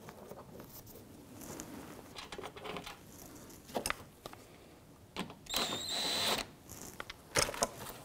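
Screws and bolts being handled and started by hand into a plastic under-car splash shield: scattered clicks and light rattles. A louder scraping sound lasting about a second comes a little past the middle.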